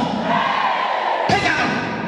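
A long, drawn-out shouted cry from a voice, broken by a sharp thud about a second and a half in, then more shouting.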